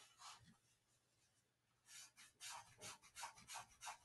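Cotton-gloved fingers rubbing and brushing over the earcup of an Onikuma K20 gaming headset: faint, with a quick series of soft rubbing strokes, about three or four a second, starting about halfway in.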